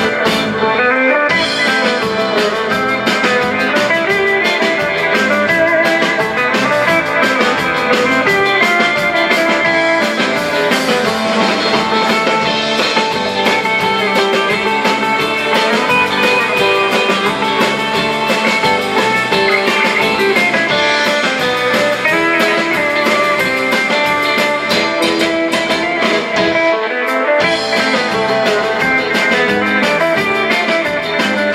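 Live rautalanka band playing an instrumental: electric guitars over bass and drums, loud and steady.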